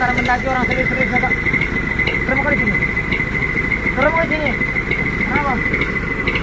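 Heavy diesel truck engine idling with a steady low rumble, under a steady high-pitched whine, while voices talk in short phrases in the background.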